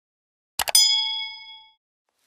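Subscribe-button sound effect: two quick mouse clicks about half a second in, then a bright bell ding that rings out and fades over about a second.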